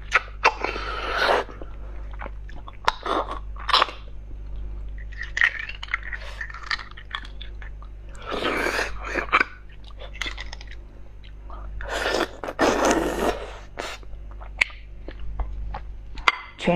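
Close-up mouth sounds of beef bone marrow being sucked out of a cut bone shaft and chewed: three long, noisy sucking rushes (about half a second in, around eight seconds and around twelve seconds) with short wet clicks and smacks between them.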